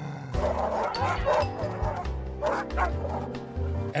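Dogs barking and yipping over music with a steady bass line.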